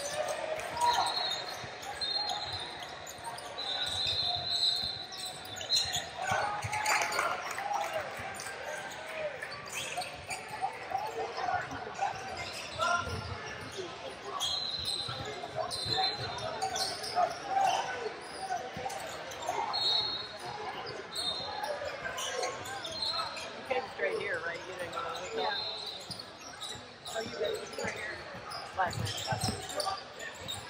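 Basketball bouncing on a hardwood court amid echoing background voices in a large gym, with short high squeaks now and then.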